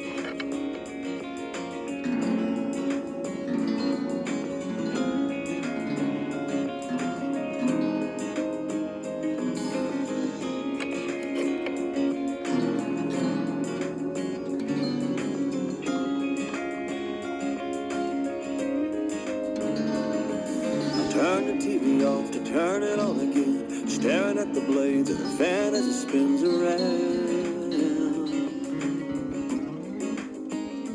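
Acoustic guitar played solo in an instrumental passage, ringing chords and picked notes without singing.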